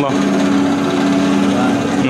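Electric motor of a home-built sheet-metal peanut shelling machine running with a steady hum.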